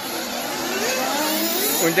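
Nitro 1/8-scale buggy engines running on the track, one high-revving engine note climbing steadily in pitch for about a second and a half as a car accelerates.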